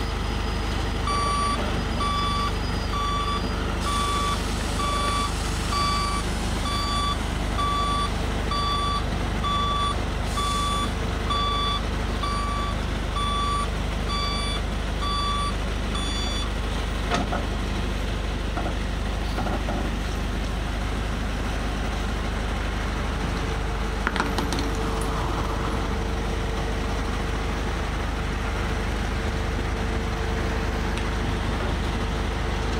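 Flatbed tow truck's backup alarm beeping about once a second, then stopping about sixteen seconds in, over the truck's engine running steadily. A couple of sharp knocks come later.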